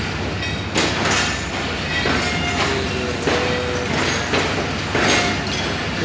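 Passenger train coaches rolling past at low speed, a steady low rumble with repeated clacks as the wheels cross rail joints.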